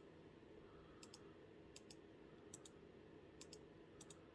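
Faint clicking at a computer: quick double clicks about every 0.8 s, over a low steady room hum.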